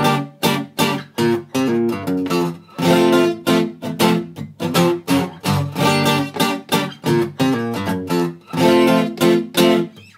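Steel-string acoustic guitar strummed fast and loosely: a run of chord strokes, two to three a second, with the chords changing as it goes. The sloppier the better.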